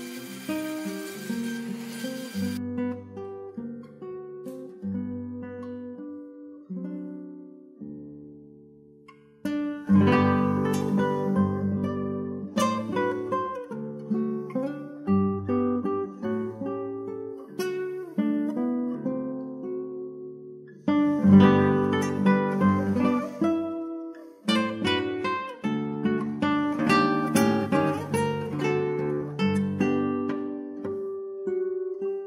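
Solo classical guitar music of plucked notes and chords in phrases, with two short breaks about a third and two thirds of the way through. A faint hiss runs under the first couple of seconds and cuts off suddenly.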